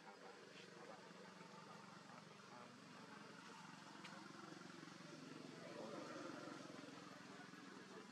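Near silence: faint outdoor background with a steady low hum and indistinct distant voices, a little louder around the middle.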